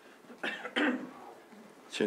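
A person coughing twice in quick succession, about half a second in.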